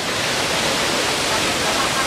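Steady rush of falling water from a waterfall and cascades pouring into shallow thermal spring pools.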